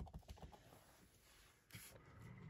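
Near silence, with a run of faint light clicks about the first half second and a short soft rustle near the end: hands handling paper-crafting supplies on the table.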